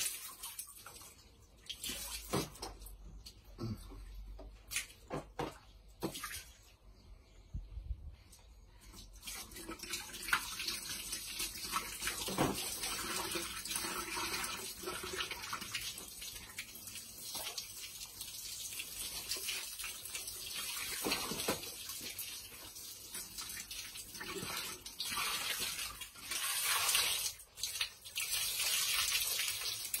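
Water from a garden hose splashing through a foam fish-pump filter sponge as it is rinsed and squeezed out. The water comes in broken splashes for the first several seconds, then runs steadier and louder through the rest.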